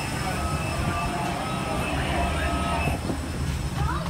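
Steady low rumble of aircraft and jet bridge background noise, with passengers' voices faint behind it.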